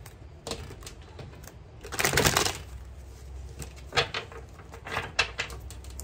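Tarot deck being shuffled by hand: scattered light clicks and snaps of card edges, with one louder rustling burst about two seconds in.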